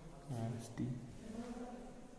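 A faint voice in held, chant-like tones, in two stretches of about half a second each.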